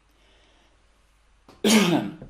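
A man coughs once into his fist, a single short sudden cough near the end of an otherwise near-silent stretch.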